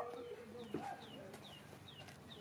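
Faint bird chirping: a short, high, falling chirp repeated about three times a second. A steady hum stops just after the start, and there is a single knock under a second in.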